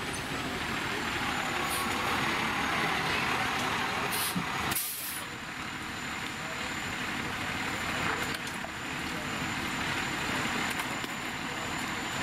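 Fire engine's diesel engine running as it pulls up, with short air-brake hisses a little past four seconds in; after that the engine runs on steadily at idle.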